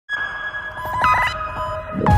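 Synthesized intro sound effect: held electronic tones with a quick flurry of short chirping beeps about a second in.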